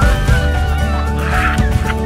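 Background music with a steady beat and a heavy bass line. Over it, a high wavering cry runs through the first second, and a short hiss comes about one and a half seconds in.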